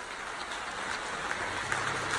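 Audience applauding, the clapping building and growing steadily louder.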